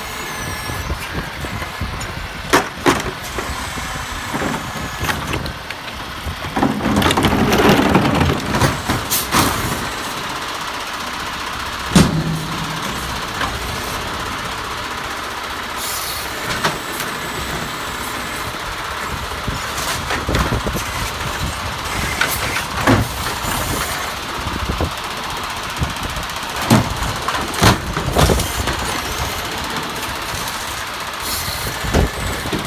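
Peterbilt garbage truck running while its automated side-loader arm lifts and tips wheeled garbage carts over the hopper. There is a loud stretch of rushing noise a few seconds in as a load empties, and about a dozen sharp knocks of the cart and arm banging against the hopper, the sharpest about twelve seconds in.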